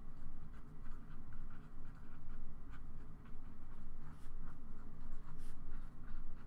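Sharpie felt-tip marker writing on paper: a run of short, irregular scratches and squeaks as the letters are stroked out.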